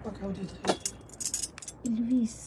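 Gold bangles clinking and jingling against one another as they are handled: a sharp clink, then a brief bright jangle about a second in, and a few light ticks after.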